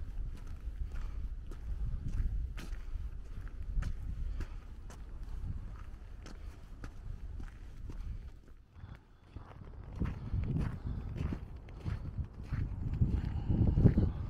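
Footsteps walking at a steady pace over frozen snow and ice, a sharp crunching step about twice a second. Under them is a low rumble of wind on the microphone, which grows stronger near the end.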